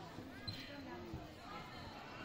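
Faint chatter of several voices in a large gymnasium, with two short thumps, about half a second and just over a second in.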